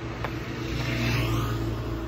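Aeroplane jet engines droning, the sound steadily getting louder, with a faint high whine rising about a second in.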